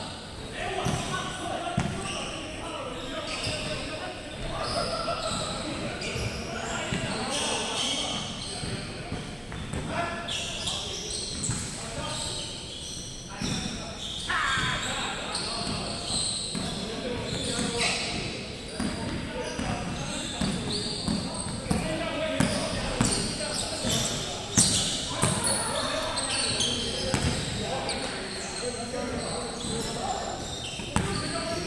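Basketball bouncing repeatedly on a hardwood gym floor during play, echoing in a large hall, with short high-pitched squeaks from players' shoes on the court.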